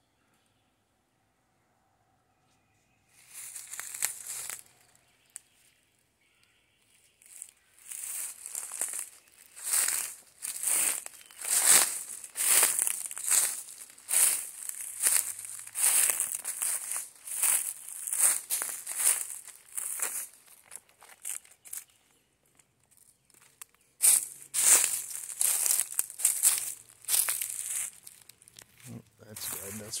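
Footsteps crunching through dry leaf litter and twigs at a walking pace of about two steps a second. They begin a few seconds in and stop briefly about two-thirds of the way through.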